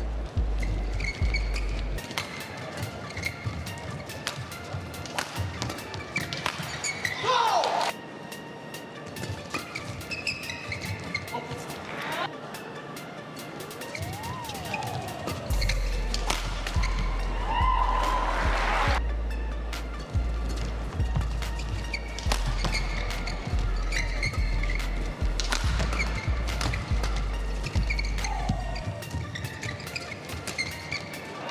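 Badminton rallies: sharp racket strikes on the shuttlecock and short squeaks of court shoes on the mat, heard over background music. The music has a heavy bass beat that drops out for a while and comes back about halfway through.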